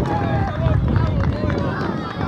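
Several people shouting and calling out on an open football pitch, likely the goal celebration. Wind rumbles on the microphone underneath.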